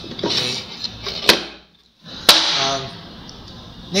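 Plywood door of a keypad-locked box being handled, with two sharp wooden clacks about a second apart near the middle and softer knocks around them.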